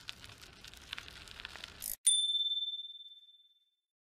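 Logo-animation sound effect: a clicking, rattling whoosh for about two seconds, then a single high bell ding that rings on one note and fades out over about a second and a half.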